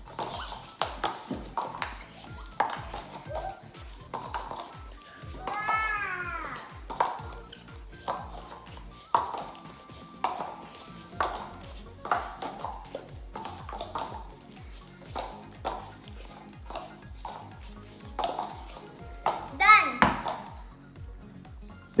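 Stacks of paper cups being handled quickly, cups pulled from the bottom and set on top, giving many light, irregular taps and scuffs over background music with a steady beat. A short voice cuts in about six seconds in and again, loudest, near the end.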